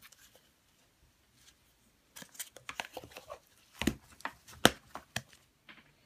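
Hands handling hard plastic toys: a run of short, sharp clicks and taps starting about two seconds in, with two louder knocks in the middle.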